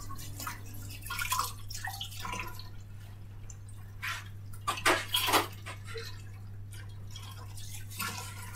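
Water dripping and splashing in irregular short bursts, a few of them louder about four to five seconds in, over a steady low electrical hum.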